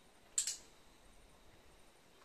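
A brief, sharp, high-pitched double click about half a second in.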